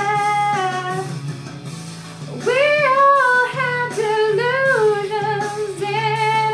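A woman singing a ballad over instrumental accompaniment. She holds a long note until about a second in, the sound eases off, then she starts a new phrase about two and a half seconds in, sliding between notes.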